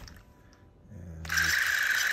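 Clockwork spring motor of a Bolex 16mm film camera starting abruptly about a second in and running with a steady whir, the mechanism turning with the door open.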